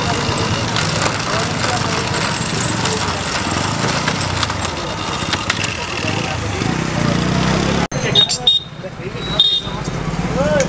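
Busy street noise: traffic and background voices, with scattered light clicks. Near the end the sound cuts off abruptly, followed by quieter street noise with two short high beeps.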